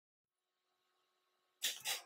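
Near silence, then two short, breathy sniffs or breaths from a man close to the microphone, about a quarter second apart near the end.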